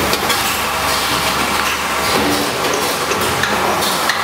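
A food packaging machine running, a steady mechanical noise with faint clicks from its conveyor and wrapping mechanism.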